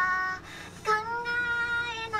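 A high, girlish voice singing: a short note, then one long held note from about a second in.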